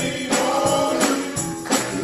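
A gospel vocal group singing in harmony, with a tambourine and handclaps marking the beat.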